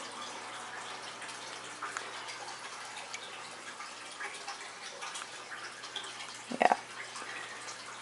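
Aquarium water running steadily in a turtle tank, a continuous trickling hiss with a few faint drips.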